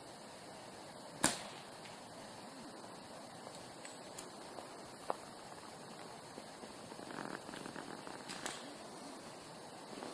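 Air rifle shot: one sharp crack about a second in, with a second, fainter crack near the end, over a faint steady outdoor background.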